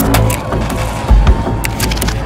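Loud percussion music: heavy drum beats, two close together about a second in, with sharp, bright clashes over a steady din.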